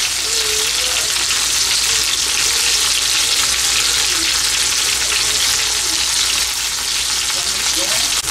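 Marinated shrimp frying in hot oil in a pan, a steady, loud sizzle as the pieces turn brown.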